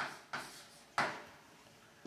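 Chalk striking a blackboard while a symbol is written: three sharp taps within the first second, each dying away quickly.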